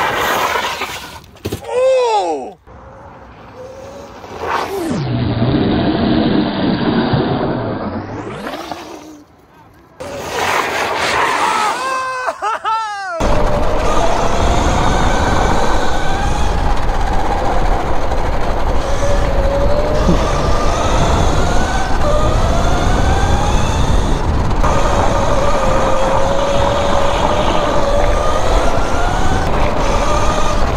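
72-volt Sur Ron–powered electric go-kart drifting: its motor whine glides up and down in pitch, with a long hiss of tyre scrub on the asphalt. About 13 seconds in the sound turns to an on-board one, with heavy wind buffeting and a motor whine that climbs again and again as the kart accelerates.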